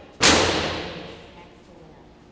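Dog-agility teeter board tipping under the dog's weight and banging down onto the floor: one loud bang about a quarter second in that rings on and fades out over about a second.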